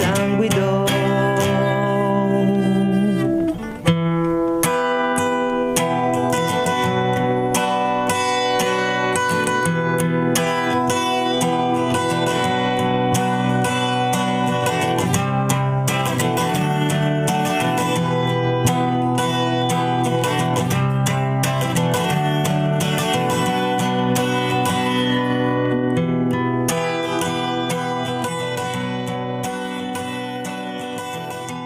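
Guitar playing an instrumental passage of a song, plucked and strummed. There is a brief break about three and a half seconds in, and the playing slowly gets quieter near the end.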